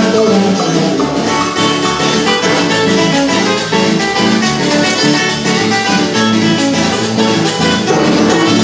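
Carranga dance music: an instrumental passage of quick plucked string instruments over a steady beat.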